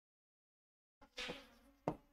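Marker pen squeaking briefly on a whiteboard about a second in, followed by a couple of short ticks as the pen strokes end; faint.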